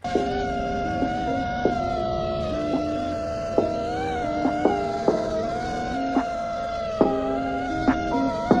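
Background music: a sustained high synth-like tone over shifting lower held notes, with scattered short percussive clicks.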